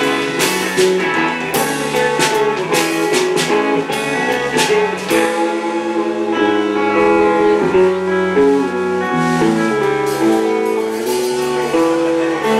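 Live rock band playing without vocals: electric guitars and bass over a drum kit. About five seconds in the drums mostly drop out, leaving the guitars ringing on held notes.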